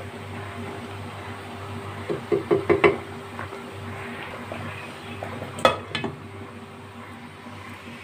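Wooden spatula knocking in a nonstick kadhai of thick masala gravy, a quick cluster of knocks about two to three seconds in, then one sharp clack a little before six seconds, over a low steady hum.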